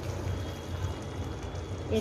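Hot matar paneer gravy bubbling softly in the kadhai just after the gas is turned off, heard over a steady low hum.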